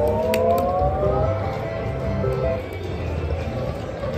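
Aristocrat Goblin's Gold video slot machine playing its electronic sound effects: a chord of tones slides upward in pitch over the first second or so, then gives way to shorter stepped tones, over the steady hum of the casino floor.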